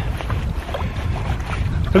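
Wind blowing across an outdoor camera microphone: a low, uneven rush of noise in a pause between words.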